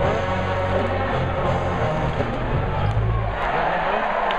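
Loud arena crowd noise over music with sustained low bass notes. The music stops a little after three seconds in and the crowd noise carries on.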